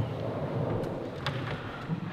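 Handheld microphone being handled as it is passed from one speaker to the next: a low rustling, rumbling handling noise with a couple of faint knocks in the middle.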